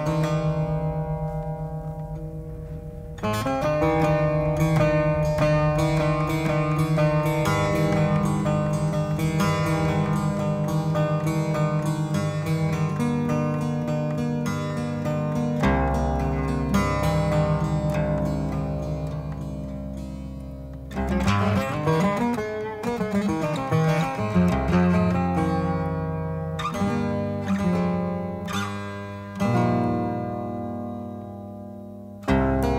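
Cretan laouto played solo: a single note rings out, then from about three seconds in a fast picked melody runs over a steady low drone note. A busier passage starts about twenty-one seconds in.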